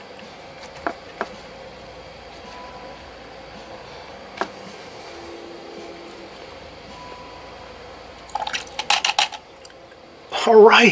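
Light taps and clicks from a paintbrush being handled at the painting table: two quick clicks about a second in, another a few seconds later, and a short run of rattling taps near the end, over a steady low room hum.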